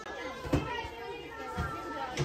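Chatter of shoppers, children's voices among them, in a busy shop. A sharp knock comes about half a second in, and a duller thump comes near the end.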